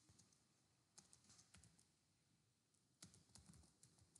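Faint computer keyboard typing: a short run of keystrokes about a second in and another about three seconds in.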